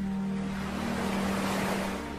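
A single ocean wave washing in, swelling and then fading, over soft sustained music tones.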